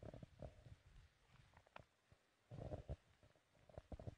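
Near silence, broken by a few faint low rumbles and soft clicks.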